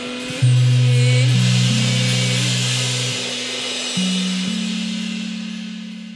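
A band's final held chord ringing out under a wash of crash cymbals, re-struck about half a second in and again near four seconds, then fading away near the end.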